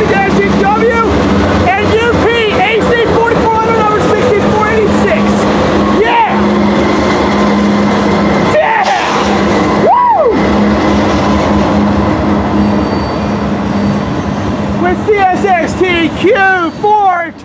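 Diesel freight locomotives going by close at hand, a GE C40-8W and then a GE AC4400CW, with a steady engine drone. Near the end the drone fades as the freight cars roll past.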